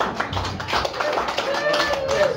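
Audience clapping, dense irregular claps, with a voice calling out briefly near the end.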